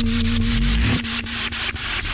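Electronic industrial music in an instrumental passage: rapid, evenly spaced bursts of hissing noise percussion over a held synth tone and bass. The held tone drops out about a second in, leaving the noise rhythm.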